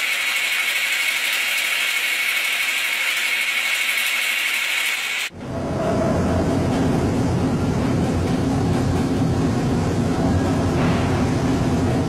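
Kitchen machinery running steadily. First a high, hissing grind from a hopper-fed grinding mill, then about five seconds in an abrupt cut to a lower, rumbling hum of motor-driven mixing machines.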